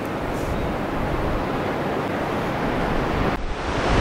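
Steady rush of wind and surf, with wind rumbling on the microphone.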